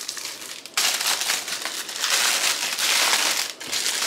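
Clear plastic wrapping crinkling loudly as it is pulled off a pair of canvas posters. It starts about a second in, with a short lull near the end.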